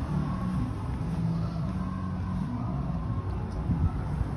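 Engine of an open-air sightseeing trolley running with a steady low hum.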